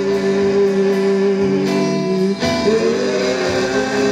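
Live church praise music: singers holding long notes over instrumental backing, one note held for over two seconds, then a short break and a new note sliding up into place.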